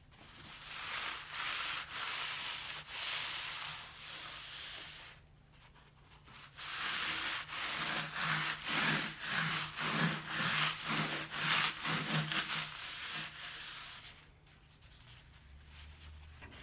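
Cloth rubbing over a milk-painted wooden table top, wiping off the excess oil wax sealer. Steady scrubbing for about five seconds, a short pause, then quicker back-and-forth strokes at about two to three a second, which stop near the end.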